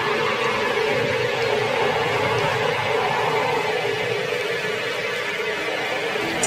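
Steady ambient drone: dense, even noise with a wavering mid-pitched tone running through it.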